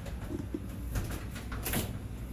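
Keys and the door lock clicking and rattling as a front door is unlocked, with a few sharp clicks and one louder click near the end. A bird coos faintly in the background.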